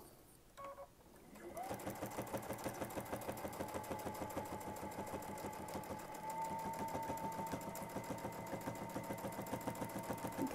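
Domestic sewing machine stitching through a quilt with a ruler foot, starting about a second and a half in. It sews at a steady speed: an even, rapid stitch beat over a motor whine that picks up slightly about six seconds in.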